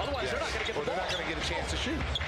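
Basketball being dribbled on a hardwood court, with repeated bounces.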